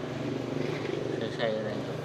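Speech: a man says a short word near the end, over a low murmur of background voices.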